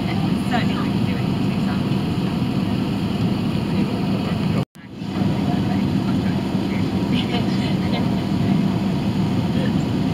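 Steady low cabin drone of an Airbus A380-800 in cruise at about 39,000 ft: engine and airflow noise heard inside the cabin. It cuts out for an instant about halfway through, then resumes.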